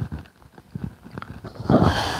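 Scattered light clicks and knocks, then a loud burst of rustling noise near the end: handling noise on a clip-on microphone as the speaker moves his hands and robe.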